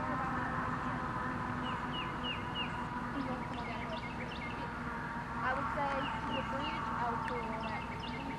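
Small birds chirping in short, quick repeated calls, in two bouts, over a steady low background hum.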